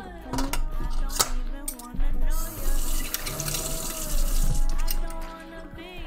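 A kitchen tap running for about two and a half seconds, beginning about two seconds in, after a couple of sharp clinks. Background music plays throughout.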